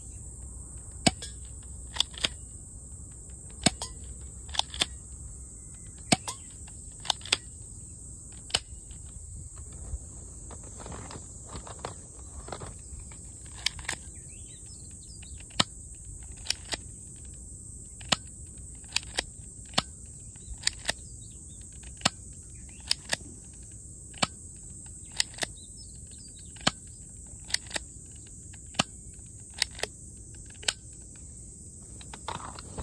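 A gun fired over and over at a target, a sharp shot about every one to two seconds, many followed a fraction of a second later by a second crack as the metal target is hit. A steady high insect buzz runs underneath.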